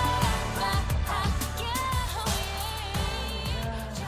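A pop song playing loud: a sung melody with vibrato over a steady bass line and a regular drum beat.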